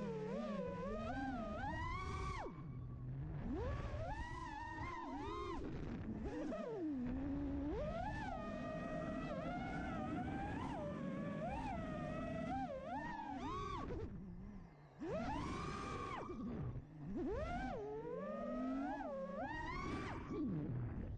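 FPV quadcopter's electric motors whining, the pitch sweeping up and down with the throttle, dropping away briefly about fifteen seconds in.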